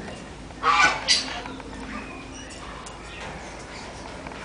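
A goose honking twice in quick succession, loud, about a second in.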